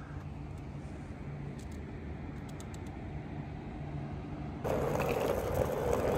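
Steady low outdoor hum with a faint drone like distant traffic. About four and a half seconds in it jumps abruptly to a louder rushing noise.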